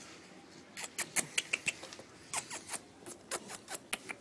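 A Staffordshire bull terrier making quick, irregular small clicks in short clusters, starting about a second in: the sound of it chewing a Bullymax chew or of its claws on the tiles.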